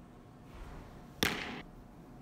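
A pitched softball smacking once into a catcher's leather mitt a little over a second in, with a short echo through the large indoor hall.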